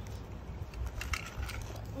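A few faint clicks of small toy cars being handled and set down on concrete pavement, over a low steady rumble.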